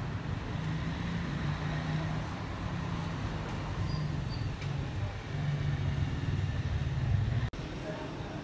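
Street traffic noise with a steady low engine hum from motor vehicles. Near the end it breaks off abruptly for an instant.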